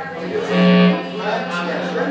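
Live band instruments sounding in a bar: an electric guitar note rings out loudly about half a second in over a steady low held tone, with voices in the room around it.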